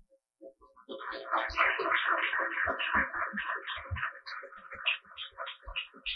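Audience applauding, starting about a second in and thinning out near the end.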